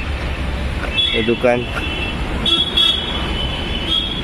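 Street traffic rumble with a vehicle horn sounding, a short toot about a second in and a longer one in the second half. A voice speaks briefly between them.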